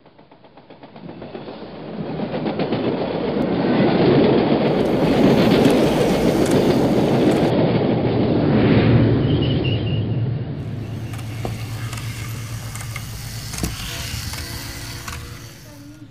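A train running, swelling up from silence over the first few seconds to a steady loud rush, then easing off in the second half.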